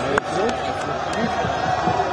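Footballers' voices shouting and calling to one another on the pitch of an empty stadium, several men overlapping, with two sharp knocks within the first half second.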